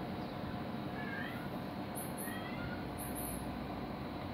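A cat meowing faintly twice, about one second and two seconds in, over a steady background rush. Pairs of short high-pitched chirps come about two and three seconds in.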